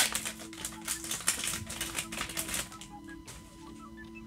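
Foil Pokémon booster-pack wrapper crinkling and cards rustling in the hands as the pack is opened. A dense run of small crackles fills the first couple of seconds and thins out after that.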